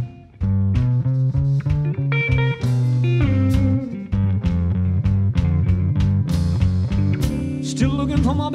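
Live electric blues band playing an instrumental passage: two electric guitars over drums. The band stops for an instant at the start and comes straight back in, and bent guitar notes rise near the end.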